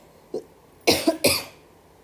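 A woman coughing twice in quick succession about a second in.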